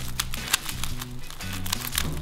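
Background music, with the quick plastic clicks of a Fisher cube puzzle's layers being twisted.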